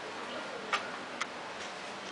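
Two sharp footsteps on hard stone paving, about half a second apart, over a steady background hiss.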